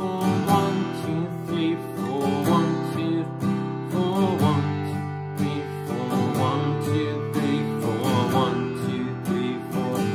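Acoustic guitar strummed in steady down strums, four on each chord, through the bridge progression G, D, E minor, C in the key of G.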